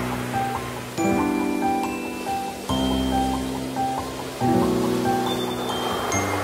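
Instrumental intro of a gentle pop ballad: sustained chords changing about every second and a half under a repeating bright, bell-like high figure, over a soft wash of background noise.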